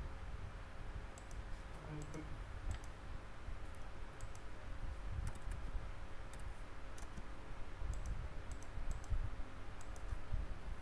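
Irregular clicks of a computer mouse and keyboard keys as letters are entered, a few a second, over a faint steady hum.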